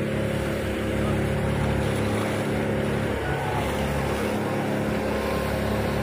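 A fire engine's motor running steadily to drive its water pump, a constant drone with a rushing hiss of hose spray and fire beneath it; the drone's tone shifts slightly about three seconds in.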